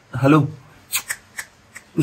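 A few short, sharp clicks close to the microphone, four or five spread over about a second after a spoken greeting.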